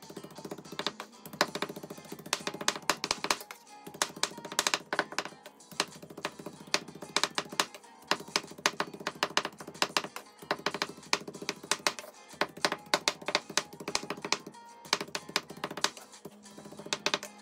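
A large chef's knife rapidly chopping raw meat on a bamboo cutting board, mincing it finely: a quick, continuous run of sharp knocks, several a second.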